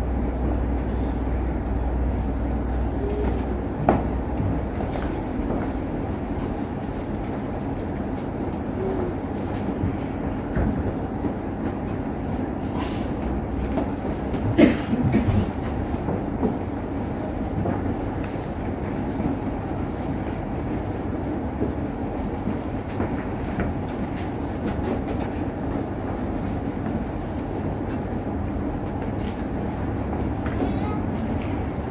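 A steady low rumble of background room noise, with a few soft knocks and clicks, the clearest about four seconds in and about fifteen seconds in.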